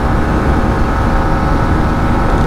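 Yamaha MT-15's 155 cc single-cylinder engine running steadily at high revs at about 120 km/h, near its top speed, with heavy wind rumble on the helmet-mounted microphone.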